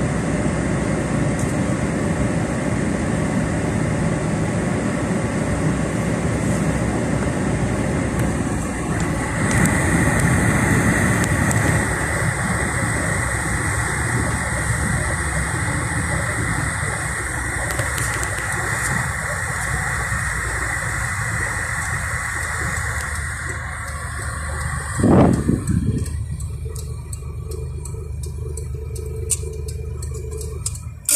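Steady engine and road noise heard inside a moving car's cabin, with a thin high whine through the middle. There is one loud thump about 25 seconds in, after which the noise drops lower, and a run of quick ticks starts near the end.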